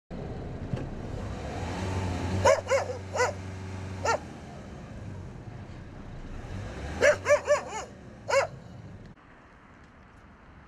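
Stray dogs barking in two short volleys: four sharp barks about two and a half to four seconds in, then four more about seven to eight and a half seconds in, over a steady low background rumble.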